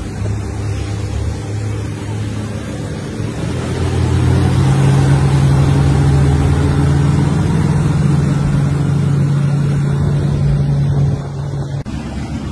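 Motorboat engine running at speed, with water rushing past and wind on the microphone. The engine note rises and gets louder about four seconds in, holds steady, then eases slightly near the end.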